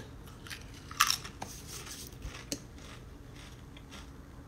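A person biting into a crunchy chip: one loud crunch about a second in, then a few fainter chewing crunches.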